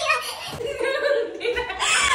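Two women laughing together in chuckling bursts.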